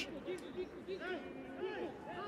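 Football stadium crowd, many voices shouting and calling over one another.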